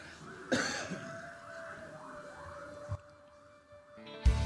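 One sharp cough about half a second in, followed by a thin held tone that sinks slightly in pitch for about two seconds and a soft knock near the three-second mark.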